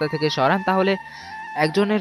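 A voice speaking over soft background music, with a short pause a little past halfway.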